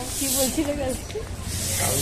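A voice talking briefly over steady background noise, with short bursts of high hiss near the start and near the end.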